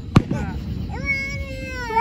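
A firework bang just after the start. From about halfway, a long, high-pitched drawn-out call is held at a steady pitch.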